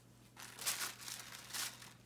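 Packaging crinkling and rustling as lingerie is handled in its box, in two short bursts: about half a second in and again near the end.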